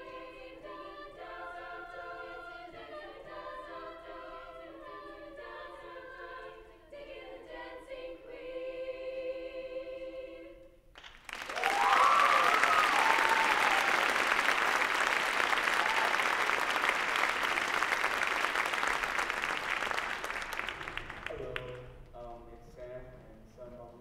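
A girls' choir sings the last bars of a song, and the singing ends about halfway through. The audience then breaks into much louder applause with a few high cheers, which dies down near the end.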